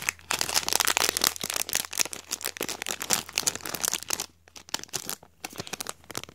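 Thin plastic packaging crinkling and crackling as it is handled and folded by hand, busy for about four seconds, then only a few scattered crackles.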